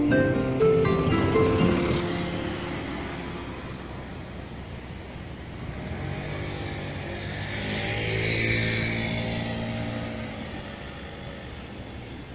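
A few mallet-percussion music notes that end about two seconds in, then a motor vehicle's engine passing by, growing louder to a peak about eight seconds in and fading away.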